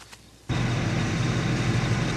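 A vehicle engine running hard and under load, cutting in suddenly about half a second in and then holding steady.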